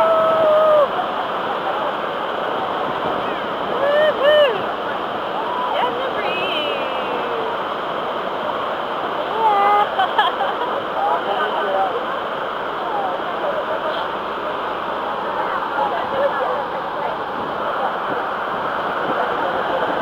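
Niagara Falls: a steady roar of water plunging onto rocks and churning white water at its base, heard up close through the spray. Short shouts and calls from people come through it now and then.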